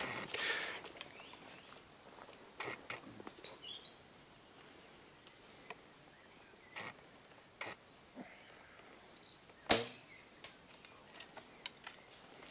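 A Korean traditional bow being shot: one sharp snap of the string at release about ten seconds in, after a few fainter clicks as the arrow is readied and drawn. Birds chirp briefly in the background.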